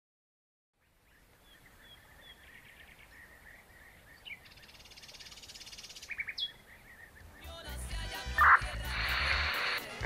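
Birds chirping over a faint outdoor ambience that fades in after about a second of silence, with a buzzy trill in the middle. In the last couple of seconds it grows louder as music with a low pulsing beat comes in.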